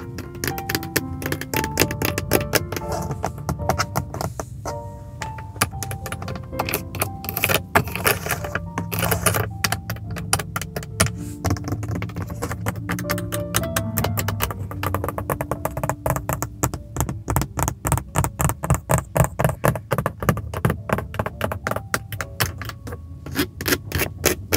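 Long fingernails tapping in quick runs on a car's plastic interior door trim, grab handle and power-window switch panel, over soft spa-style background music. The taps are fastest and most even in the second half.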